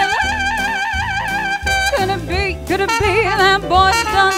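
A woman singing a swing-style song into a microphone over a brass-led backing band, holding a long note with vibrato through the first second and a half.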